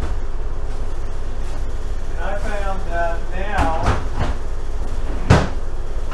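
A refrigerator door shutting with a single sharp thump about five seconds in, with a couple of lighter knocks before it, over a steady low hum.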